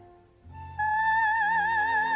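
Operatic soprano singing with orchestral accompaniment. After a brief lull, the orchestra comes in about half a second in, and the voice enters just after on a loud, held high note with wide vibrato.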